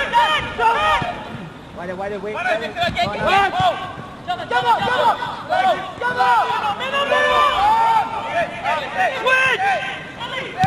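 Indistinct talking from several people's voices, overlapping and continuing without a break, over faint outdoor background noise.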